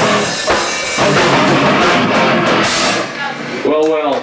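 Hardcore punk band playing live: distorted electric guitars and a drum kit, the song ending about three seconds in, followed by a brief raised voice.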